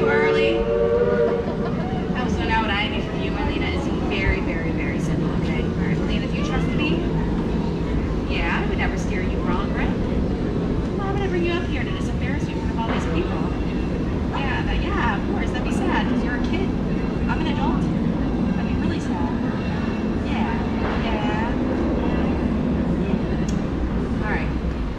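A sustained chord of several steady tones fades out in the first second or so, leaving a steady low rumble throughout. Scattered voices and chatter from a seated crowd sound over the rumble.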